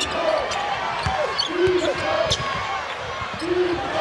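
Basketball court sound: the ball bounces on the hardwood floor a few times, over the voices and murmur of the arena crowd.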